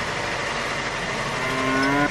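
A steady background hiss, with a cow mooing once, briefly and rising slightly in pitch, about one and a half seconds in.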